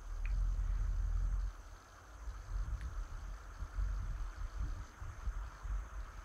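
Low, uneven rumble with a faint steady hiss, strongest in the first second and a half: handling noise from a handheld camera microphone as it pans across an empty room.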